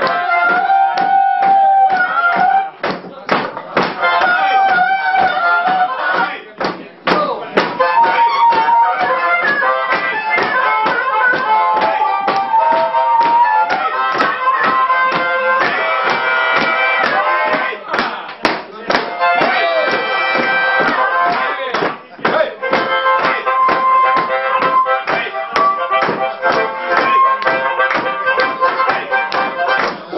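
Harmonica solo played live in a song, its melody carried over a steady rhythmic accompaniment.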